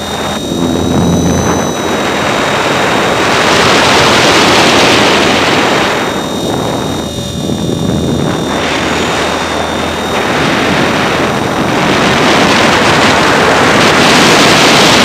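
Onboard sound of an E-flite Blade 400 electric RC helicopter in flight: a loud rush of rotor wash and wind over the camera, with a thin high whine from the motor and gears. The level dips and swells a few times as it manoeuvres.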